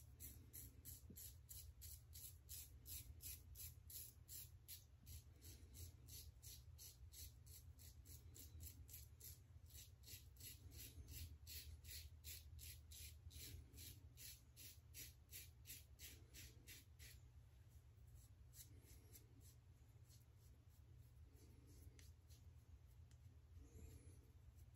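Faint, short scraping strokes of a Leaf Twig razor with a Leaf half blade cutting stubble through lather, about two to three strokes a second, thinning out to a few strokes near the end. This is a final touch-up pass on a section of the face and neck.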